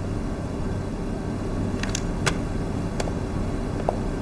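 Steady low background hum of room tone, with a few faint light taps about two seconds in and again near the end.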